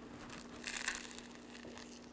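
A bite into a toasted crusty-bread sandwich: the crust crunches for about half a second, starting just over half a second in.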